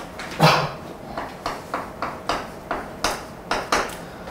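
Chalk on a chalkboard: a louder knock about half a second in, then a quick run of short taps and scratches as a number is written.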